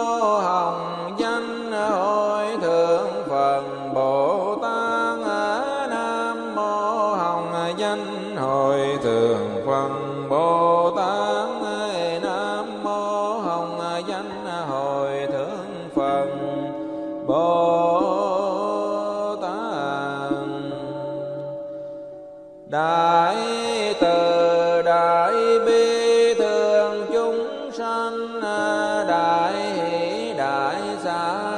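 Buddhist chant sung melodically by a voice with musical accompaniment, the melody gliding between long held notes, breaking off briefly about three-quarters of the way through before resuming.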